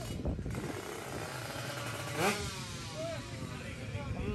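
Racing motorcycle engine revving up sharply once, about halfway through, its pitch rising fast, over a steady hubbub of crowd voices and engine noise.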